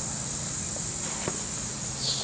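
Chorus of insects giving a steady, high drone.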